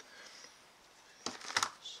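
Near silence with a faint hiss, then a few brief clicks about a second in, just before a man begins to speak.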